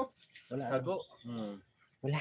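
Crickets trilling steadily and high-pitched in the background, with short bits of a man's voice twice.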